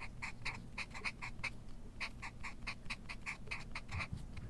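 Felt-tip marker squeaking across a paper card in quick short strokes, several a second, with a brief pause about one and a half seconds in, over a faint low hum.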